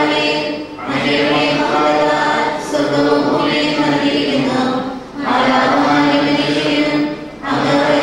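Voices singing a Malayalam liturgical chant together without accompaniment, in long held phrases with short breaths between them.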